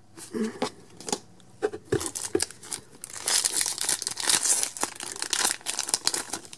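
Foil Pokémon booster-pack wrapper crinkling and tearing open. A few light clicks come first, and the crinkling is densest in the second half.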